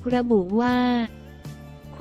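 A woman's voice narrating in Thai over quiet background music: she speaks a short phrase ending in a long drawn-out vowel, then for about the last second only the soft music is heard.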